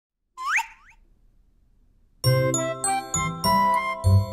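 A quick rising swoop sound effect, then after a short pause a bright, tinkly children's jingle starts about two seconds in, with bell-like notes over a low bass.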